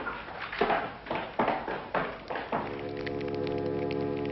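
A run of sharp knocks, about two a second. About two and a half seconds in, organ music comes in with a sustained chord.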